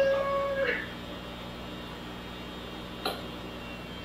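A man's drawn-out voice trailing off just after the start, then quiet workshop room tone with a steady low hum and one faint click about three seconds in.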